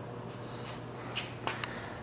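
Quiet room tone with a steady low hum, a soft breath, and a few faint clicks in the second half.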